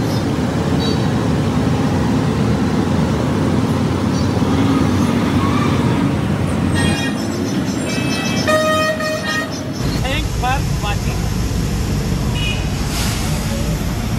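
Heavy truck engine and street traffic rumbling steadily, with vehicle horns sounding; one long horn blast comes about seven seconds in and lasts about three seconds.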